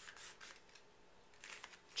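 Faint crinkling and rubbing of a strip of duct tape being pinched and shaped by hand, with a few soft crackles near the start and again about a second and a half in.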